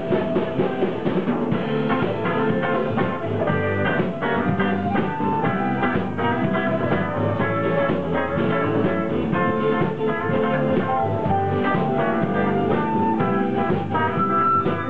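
Live indie pop band playing with drum kit, electric bass, guitar and flute.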